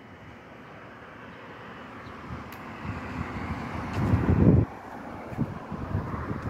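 Street traffic, a vehicle passing with the noise building up over a few seconds, and wind buffeting the microphone, loudest in a rumble about four seconds in that cuts off suddenly.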